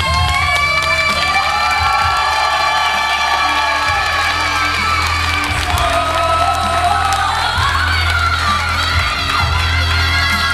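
A woman singing a Romani song live into a microphone with held, wavering notes over backing music with a steady bass, while the audience cheers and whoops.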